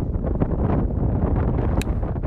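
Wind buffeting the microphone in a steady low rumble, with one sharp click near the end as a golf club strikes the ball on a low punch shot.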